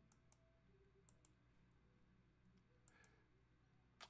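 Near silence broken by a few faint, sharp computer mouse clicks, scattered irregularly with a close pair near the end.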